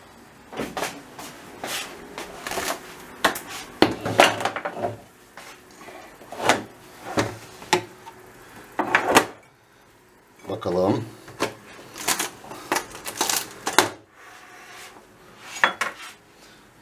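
Metal baking trays clattering and knocking as a hot tray of börek, covered by a larger tray, is turned upside down and set down. The knocks come irregularly, with a quieter stretch about ten seconds in.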